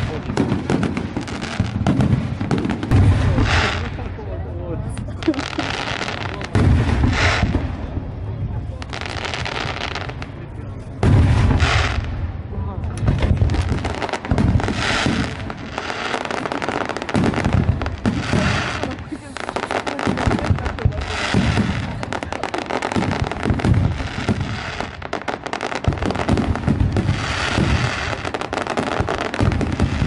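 Aerial fireworks display: a continuous string of bangs and pops, with the loudest bursts about six and a half and eleven seconds in.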